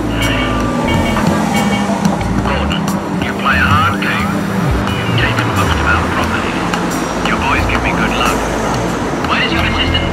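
Night city street ambience: traffic, with one vehicle's low engine tone falling in pitch over the first second or two and then holding steady for a few seconds as it passes, and indistinct voices of passers-by.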